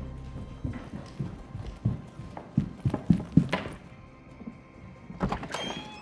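Irregular thumps of hurried footsteps on a hard floor, quick and uneven, with the loudest strokes in the middle seconds.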